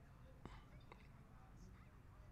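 Near silence: a faint, murmured voice under room tone, with one short click about half a second in.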